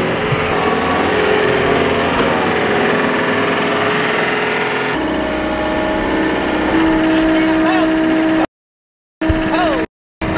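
John Deere 325G compact track loader's diesel engine running steadily, its note shifting about halfway through and again later. The sound cuts out abruptly twice near the end.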